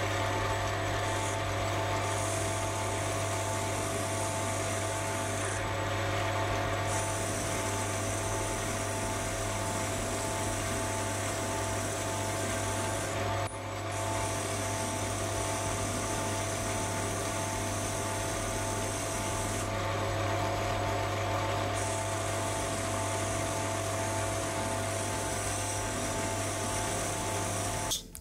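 Sieg C3 mini lathe running steadily with a constant motor hum and whine while a high-speed-steel tool cuts an aluminium bar. A higher hiss from the cut drops out twice for a second or two.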